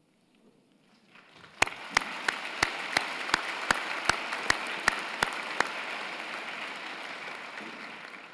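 Audience applause in a hall, starting about a second and a half in. For the first few seconds one person's claps ring out close to the microphone, about three a second, over the crowd's clapping, which then tapers off.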